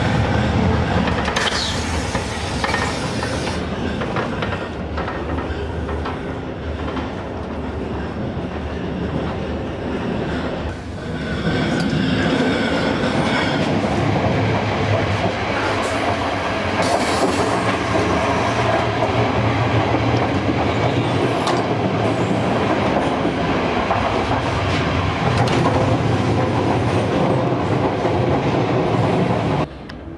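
Ganz-MÁVAG diesel multiple unit running, heard from inside the carriage: a steady rumble of wheels on rail with some clickety-clack, growing louder about eleven seconds in.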